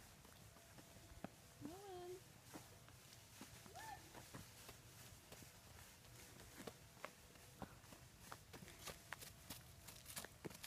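Faint, irregular footsteps of a toddler walking on an asphalt driveway with scattered dry leaves, with two brief voiced sounds about two and four seconds in.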